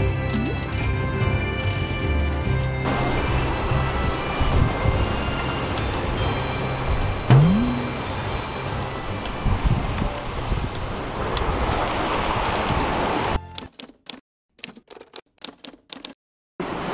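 Background music, then the steady rush of wind and sea on the deck of a sailboat under way in rough water. Near the end the sound drops to near silence broken by a short run of sharp clicks.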